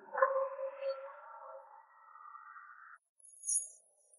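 A ringing magic-spell sound effect: several steady tones that start suddenly about a quarter second in, fade slowly and cut off at about three seconds, followed by a brief high shimmer. It cues the casting of a thunder talisman.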